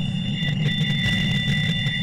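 Audio track presented as the 1977 SETI 'Wow!' radio signal: steady high-pitched squeal tones over a deep rumbling, rattling drone, with a second, lower whistle tone coming in about half a second in.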